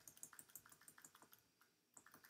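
Faint, quick clicking of computer keys, several clicks a second, stopping about one and a half seconds in; otherwise near silence.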